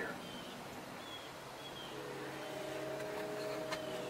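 Quiet outdoor field ambience with a few faint, short bird chirps. A steady low hum of several tones comes in about halfway through.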